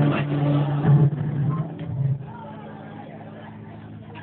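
Music played over a PA system with sustained low notes stops about two seconds in. It leaves a steady electrical hum from the sound system and faint voices.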